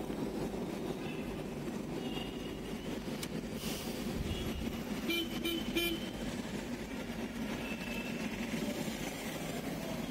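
City street traffic: a steady hum of passing cars and motorbikes, with a vehicle horn tooting in several quick short blasts about five seconds in and fainter horns now and then.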